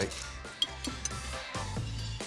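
Background music, with a metal balloon whisk clinking against a ceramic mixing bowl as cream cheese and egg are whisked; one sharp clink a little over half a second in.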